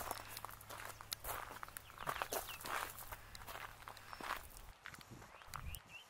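Faint footsteps and small knocks of someone walking and moving a handheld camera, over a low steady rumble that stops near the end.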